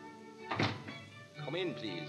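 A radio-drama orchestra plays a bridge of held, sustained notes. About half a second in there is a single thump, and near the end a short voice-like sound rises and falls in pitch.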